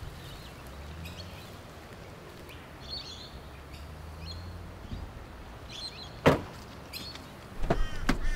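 Faint bird chirps over a low hum, then one sharp click about six seconds in, the loudest moment. Near the end comes the clunk of a car door being opened.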